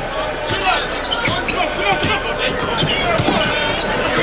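A basketball dribbled on a hardwood court, under a steady din of arena crowd voices.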